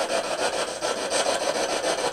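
Spirit box (a radio that scans rapidly through stations) sweeping, giving a steady stream of radio static chopped into rapid, even pulses.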